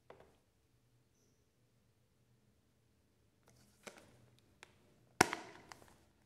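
Plastic Blu-ray case being handled and opened. A faint click comes at the start, then handling with small clicks from about three and a half seconds in, and one sharp snap, the loudest sound, as the case's clasp comes open about five seconds in.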